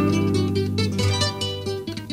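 Acoustic guitars playing an instrumental passage of Peruvian criollo music: a picked melody over low bass notes, with no singing.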